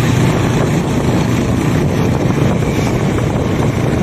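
Motorcycles riding along at steady speed: a low, even engine drone mixed with wind rushing over the microphone.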